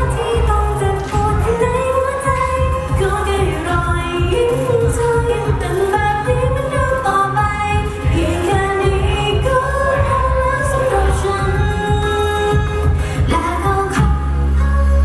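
Idol pop song performed live over a venue sound system: a female vocal line sung over a backing track with a steady bass beat.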